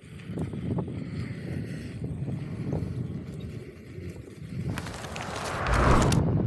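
Electric unicycle's tyre rolling over a gravel path, with low wind rumble on the microphone and small ticks of grit. Near the end a rising whooshing rush of noise builds and peaks.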